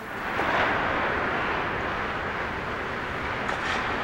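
Hockey skate blades carving and scraping across rink ice as several players skate hard, a steady hiss with a faint tick or two near the end.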